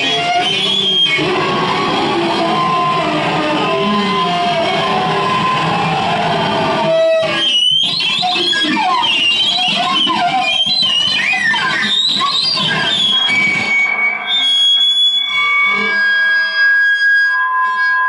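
Harsh power-electronics noise played loud through amplifier cabinets: a dense distorted wall of noise that drops out briefly about seven seconds in, then comes back as wavering, sliding squeals and, in the last few seconds, several steady high tones held together.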